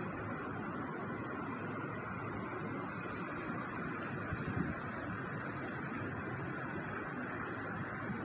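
Steady outdoor background noise, an even hiss and rumble with no distinct event, typical of open-air city ambience on a phone microphone.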